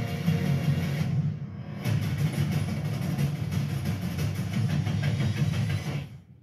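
Dark film-trailer soundtrack music with a dense, low-pitched pulse, thinning briefly about a second in.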